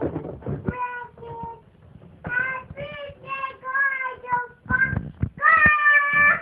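Young child singing in a high voice: a run of short held notes, ending on a longer note near the end.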